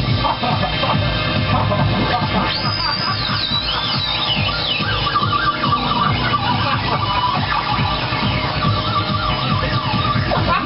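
Live electronic house music played on synthesizers and a mixer, with a beat underneath. A high synth line wavers up and down in pitch a few seconds in, then a lower wavering line carries on to the end.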